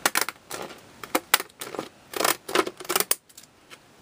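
Decorative zigzag-edge scissors snipping through white cardstock: an uneven run of crisp cuts, two or three a second, that stops a little after three seconds in.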